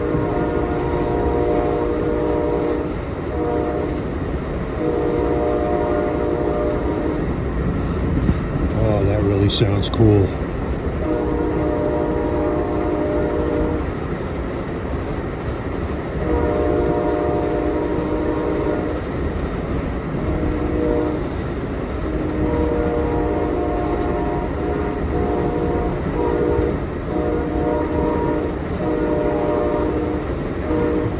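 The Raised Letter K5LA five-chime horn on a P40 locomotive, sounding a series of long and short blasts over the steady rumble and clatter of the moving train.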